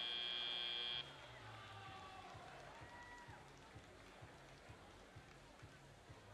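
Arena end-of-match buzzer: a loud, steady high tone that cuts off suddenly about a second in. It is followed by faint gym crowd noise.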